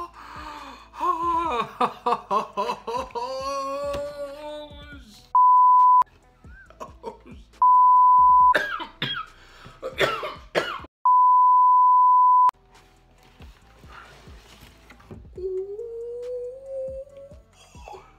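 Three loud, steady, high-pitched censor bleeps, about five, eight and eleven seconds in; the last is the longest, about a second and a half. Around them a man makes excited wordless exclamations and cough-like vocal noises, ending in a long rising "ohh".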